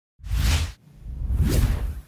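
Two whoosh transition sound effects: a short one lasting about half a second, then a second that swells to a peak about a second and a half in and fades away.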